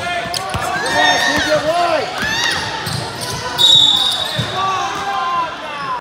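Indoor basketball game: a ball bouncing on the hardwood court with sharp knocks, sneakers squeaking and voices calling out around the hall. A short, steady, high whistle blast comes about three and a half seconds in.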